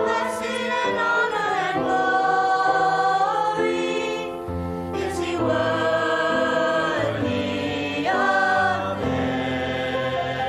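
A small mixed choir of young male and female voices singing in harmony, holding long sustained notes that change every second or two.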